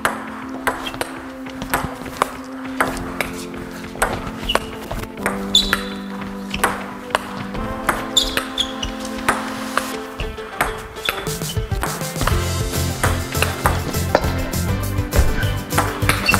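Background music with the sharp, irregular clicks of a table tennis rally: the ball bouncing on the table and being struck with helmets used as rackets. The music picks up a deeper bass in the last few seconds.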